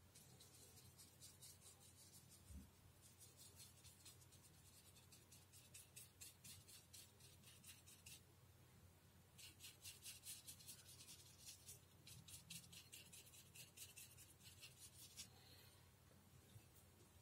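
Faint, quick strokes of a fine paintbrush brushing paint onto paper, in two runs of short scratchy dabs with a brief pause just past halfway.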